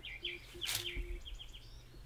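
A brief rustle and splash about a second in as leafy leucaena branches are dropped into a barrel of water, over faint bird chirps.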